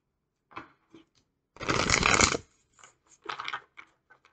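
Tarot cards being riffle-shuffled on a table: a few light taps, then one long riffle about one and a half seconds in lasting nearly a second, and a shorter burst of card noise near the end as the deck is squared.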